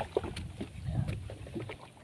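Sea water lapping and sloshing against a small boat's hull, with a few light splashes and knocks about the first half-second.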